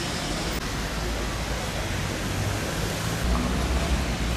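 Steady outdoor street noise, a hiss-like haze of distant traffic with faint voices, and a low rumble that grows louder near the end.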